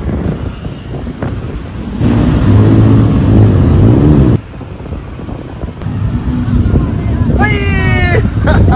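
Motor traffic running along a city street, with wind on the microphone. A louder, steady engine hum in the middle cuts off suddenly, and a brief high-pitched voice rises near the end.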